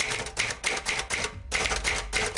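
Typewriter sound effect: rapid key strikes, about seven a second, with a short break about one and a half seconds in, laid under on-screen text typed out letter by letter.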